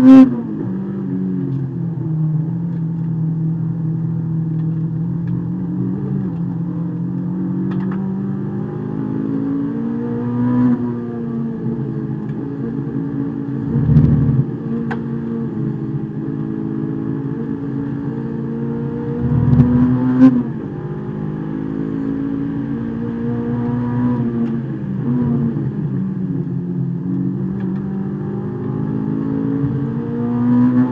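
Honda S2000 race car's four-cylinder engine heard from inside the cabin, its note climbing under acceleration and dropping back several times as the car works through corners. A few louder low thumps stand out about halfway through and again a few seconds later.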